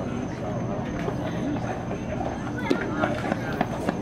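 Scattered background voices of spectators and players talking and calling out, none close. There are a few short sharp clicks near the end.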